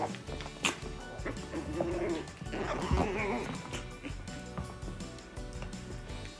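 Background music with a puppy and a small adult dog making short, wavering calls as they play-fight, about one and a half to three seconds in.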